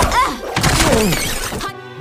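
Animated fight-scene soundtrack: a crash with shattering and breaking effects over music and a character's voice, cutting off abruptly near the end.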